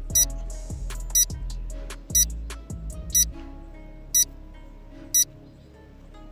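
A countdown-timer sound effect: six short, high-pitched beeps, one a second, over background music that gets quieter about halfway through.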